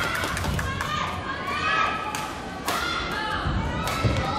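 Badminton rally: several sharp racket hits on the shuttlecock and thudding footfalls on the court floor in a large hall, with high voices calling out around them.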